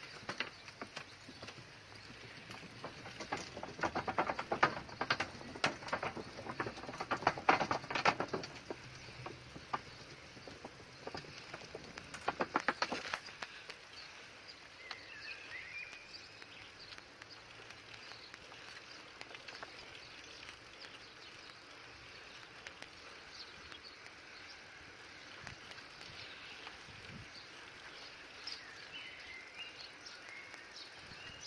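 Footsteps crunching on gravel and dirt, dense between about three and nine seconds in and again briefly around twelve seconds, then quieter outdoor ambience with a few bird chirps.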